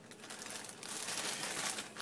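Plastic wrapping crinkling and rustling unevenly as it is handled.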